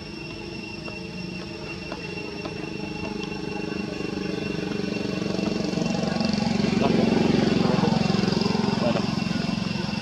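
A motor vehicle engine running steadily, growing louder to a peak about seven seconds in, then easing off slightly as it goes by.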